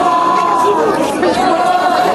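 Voices from a group of people, with long held sung notes over crowd chatter.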